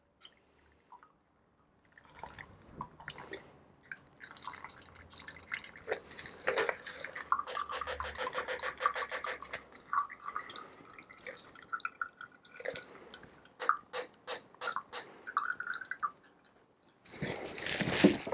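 A shaken cocktail is double-strained from a metal shaker through a fine mesh strainer into a glass: the liquid trickles and drips into the glass, with a steadier pouring tone in the middle, then sparser drips and small clicks as the last of it runs through. A brief louder noise comes just before the end.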